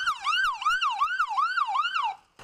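Ambulance siren on a fast yelp, its pitch rising and falling about three times a second.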